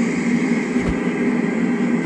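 Steady droning hum with an even hiss behind it, and a faint click about a second in.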